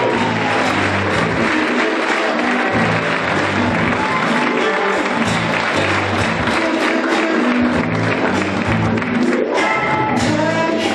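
Audience applauding and cheering over rock music with a steady bass line. The music's pitched parts come through more clearly near the end.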